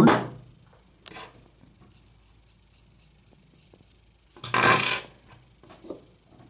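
Hands handling small extruder parts and hardware on a wooden tabletop: a faint knock about a second in, then a louder scrape lasting about half a second near the end.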